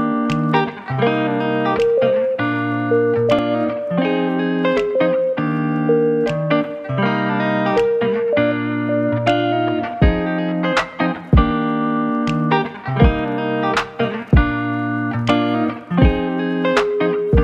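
Instrumental background music of plucked, guitar-like notes; a deep beat joins about ten seconds in.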